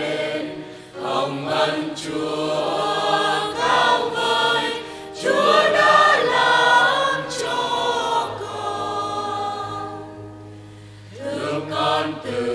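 Church choir singing a Vietnamese hymn as the closing hymn of Mass, with a steady low note held underneath in the latter part. The voices thin out briefly near the end, then come back in.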